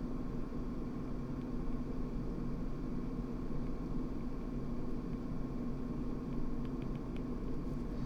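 Steady low hum and hiss of electrical and fan background noise, with a few faint ticks from a stylus writing on a tablet.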